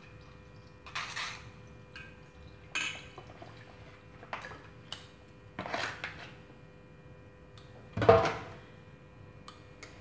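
Fresh milk poured from a carton into a stainless steel pot, with a few short clinks and handling sounds of metal chopsticks and the carton against the pot, and a louder knock about eight seconds in.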